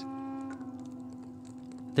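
Soft background music holding a steady chord that slowly fades, its higher notes dropping out about half a second in.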